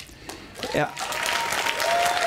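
Audience clapping, breaking out just under a second in and building into steady applause.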